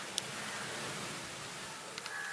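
Steady, even background hiss, with one brief faint click about a fifth of a second in.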